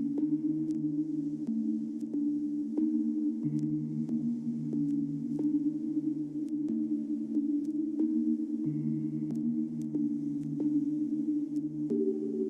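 Background ambient music: a low, sustained synthesizer drone whose held chord shifts every few seconds, with scattered sharp clicks.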